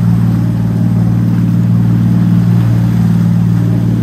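Boat engine running steadily while the boat is under way: a loud, even low drone with a hiss of noise above it.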